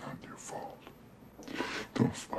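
Quiet, hushed male speech.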